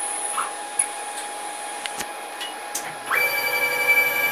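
Stepper motors of a 6040 CNC router singing through a rapid axis move about three seconds in: the pitch ramps up, holds steady for about a second and drops away, followed by a shorter move. A steady high whine runs underneath, with a single click about halfway.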